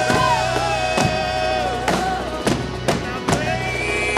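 Live band music with heavy drumming: marching snare, a mallet-struck bass drum and a drum kit hit in a beat under held sung notes.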